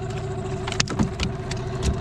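A motor hums steadily throughout. A few sharp clicks and knocks come about a second in and again near the end, as fishing tackle and a freshly caught fish are handled in an aluminium boat.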